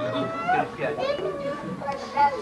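Speech only: quiet, high-pitched voices talking, softer than the discourse around them.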